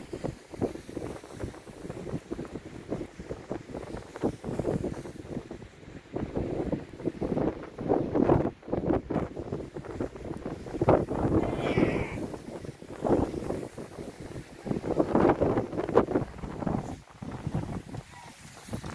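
Skis scraping over packed piste snow while skiing downhill, with wind rushing on the microphone; the noise swells and fades in uneven waves.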